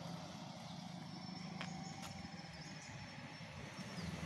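A truck engine running faintly in the distance as it drives away: a low, steady hum.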